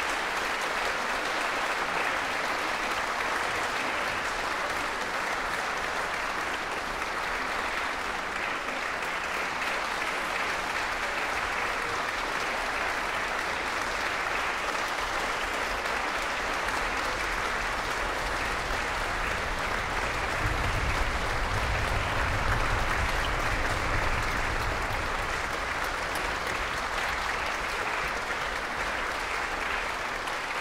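Audience applauding steadily and continuously, with a low rumble joining in for a few seconds about two-thirds through.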